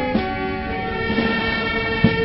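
Brass band music with sustained notes that change about halfway through, and a drum hit just after the start.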